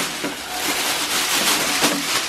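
Thin plastic shopping bag rustling and crinkling steadily as a hand rummages through it.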